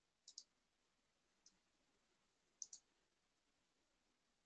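Faint computer mouse clicks over near silence: a quick double click about a third of a second in, a single click around a second and a half, and another double click a little past halfway.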